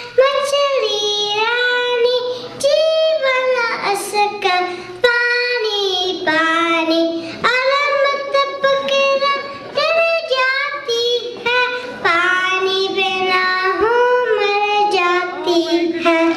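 A young child singing a song into a handheld microphone, one high voice carrying a melody of held notes that step up and down. No instrument is heard with it.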